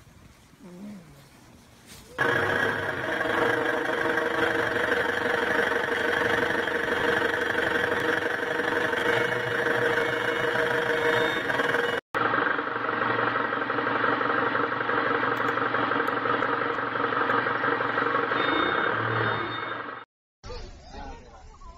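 A large vehicle's engine running steadily and loudly from about two seconds in, with a brief break about twelve seconds in before the same kind of steady engine sound carries on.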